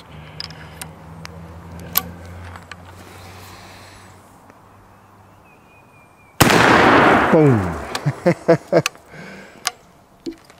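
Original 1880s Remington Rolling Block rifle in .45-70, loaded with black powder: a few light clicks as the cartridge is slid into the chamber and the action is closed, then after a quiet pause a single loud shot about six seconds in, with a long echo.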